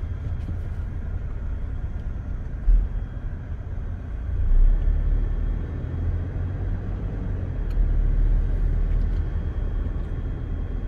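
Inside a moving car's cabin: a steady low rumble of engine and road noise, swelling a couple of times, with a short low thump nearly three seconds in.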